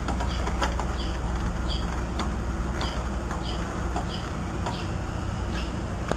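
Steady low rumble with a short high chirp repeating about every two-thirds of a second and a few sharp clicks, the clicks fitting a wrench working the fuel tank's mounting bolt.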